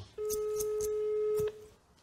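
A steady electronic beep tone held for about a second and a half, with a few clicks over it, then cut off.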